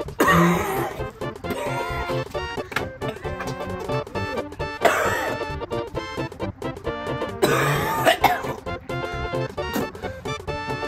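Background music over a man coughing and gagging in three loud bouts, at the start, about halfway and near the end, as he chokes on a mouthful of a revolting food mixture.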